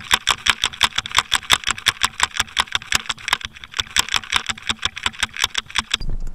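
Rapid, even clicking, about nine clicks a second, heard underwater: the rattle of a muskie lure knocking as it swims on the retrieve.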